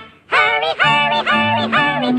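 Cartoon mice chorus singing in high, sped-up voices over a light orchestral accompaniment, in short quick syllables after a brief break at the start.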